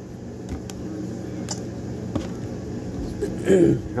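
A few faint, sparse clicks of disassembled pistol parts being handled over a steady low hum, then a man clearing his throat near the end, which is the loudest sound.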